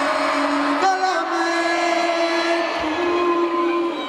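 Live stage keyboard holding long sustained chords, moving to a new chord about a second in, over the noise of a large concert crowd.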